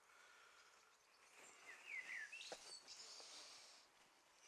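Quiet outdoor ambience with a few short bird chirps about halfway through, and faint rustling and clicks from a hand working moss and stone on a wall.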